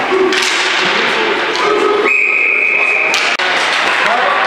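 Referee's whistle blown once, a steady shrill tone of about a second that stops abruptly, over the clatter and noise of play in an indoor ball hockey rink. The whistle signals a stoppage of play.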